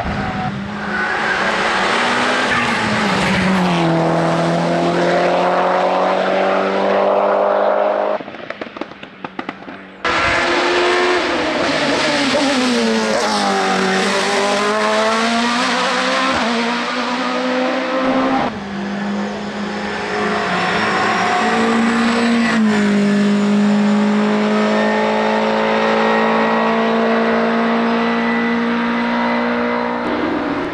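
Race car engines at full throttle in a run of short clips, the pitch climbing through the revs and dropping at each gear change as the cars accelerate. There is a quieter stretch with crackles about eight seconds in.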